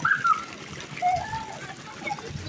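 Water splashing as a small child paddles through a shallow wading pool, with short high calls of children's voices over it.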